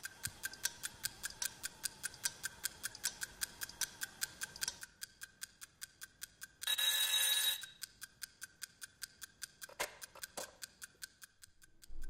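A clock ticking fast and evenly, louder at first and fainter in the second half. About halfway through, an alarm clock rings for about a second. A couple of soft knocks follow near the end.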